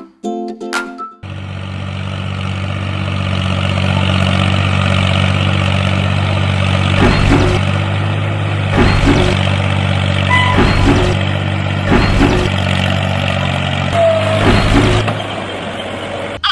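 Tractor engine sound running steadily. It comes in about a second in and builds over the next few seconds, with heavier surges every second or two in the second half. A short plucked-string music phrase plays at the very start.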